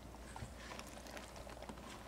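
Faint, scattered soft taps and scrapes of a spatula stirring cranberries and apples in a pan, over a low steady hum.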